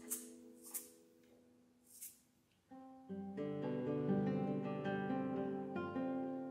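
A guitar chord fades away, crossed by a few short hissing percussion strokes in the first two seconds. After a brief pause, the guitar plays a run of plucked notes that build into a ringing chord.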